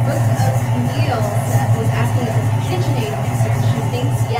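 KitchenAid stand mixer running steadily with its paddle attachment, beating soft room-temperature butter with the dry ingredients for shortbread dough.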